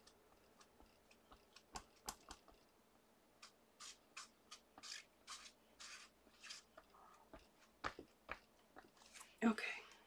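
Faint rubbing strokes, about three a second, of a damp stamp-cleaning cloth wiped back and forth over a rubber stamp to clean off ink, after a few light clicks.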